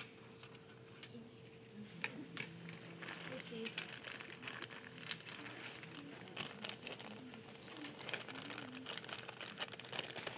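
Faint handling noise of paper sheets and drawing pencils on a desk: light rustles and many small taps and scratches in quick succession, starting about two seconds in.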